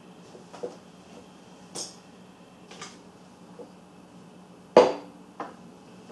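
A handful of sharp clicks and clacks of small hard parts and tools being handled and set down on a workbench, the loudest a little before the end, over a faint steady hum.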